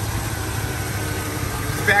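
A 1972 Chevrolet El Camino's 350 small-block V8, topped with a four-barrel Edelbrock carburetor, idling steadily with the hood open; quiet, not loud.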